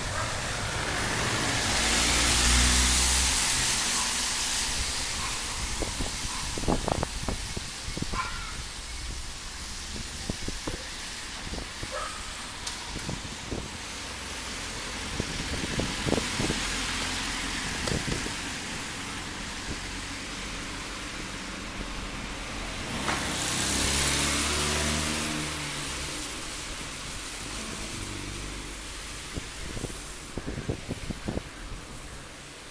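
Road traffic passing on a city street: vehicles swell up and fade away, the loudest pass-bys about two seconds in and again about two-thirds of the way through, with a smaller one in the middle. Scattered sharp clicks and knocks sound in between.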